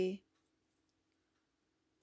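A narrator's voice finishes a word in the first moment, then near silence, a pause in the speech, with only a faint steady hum underneath.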